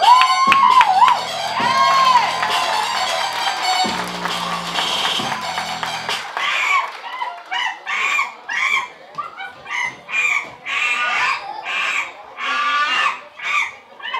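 Recorded music plays and stops about six seconds in. It is followed by a run of about a dozen short, loud caw-like calls, a little under a second apart, voicing the crows.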